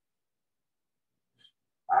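Near silence through a pause in talk, with one faint short sound about one and a half seconds in, then a man starts speaking near the end.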